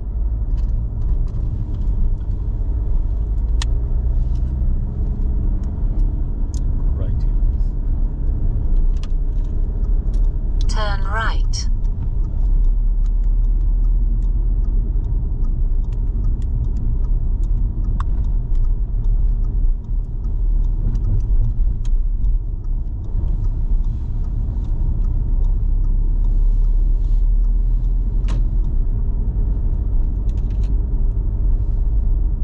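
Steady low rumble of road and engine noise inside a moving car's cabin. About eleven seconds in there is a short, high, wavering sound.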